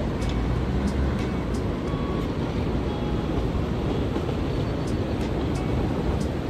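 Steady low rumble of outdoor city ambience, like distant road traffic, with a few faint short tones over it.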